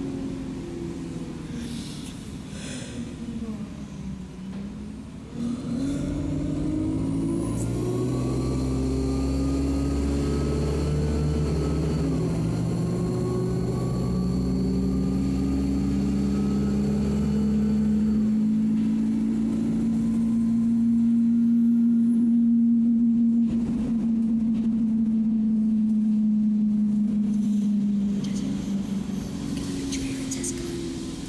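Alexander Dennis Enviro 200 Dart bus heard from inside the saloon, its diesel engine and automatic gearbox pulling away about five seconds in. The engine note rises and changes in steps as the gears change, then settles into a steady, slowly rising drone, with a faint high whine through the middle.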